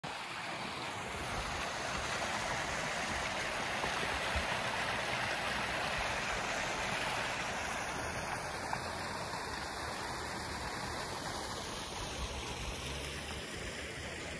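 Shallow creek running over rocks: a steady rush of flowing water.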